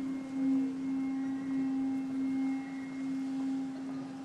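Ambient drone music: one low note held steady, swelling gently in loudness, with faint higher tones coming and going above it.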